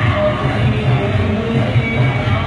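Background music with a strong bass.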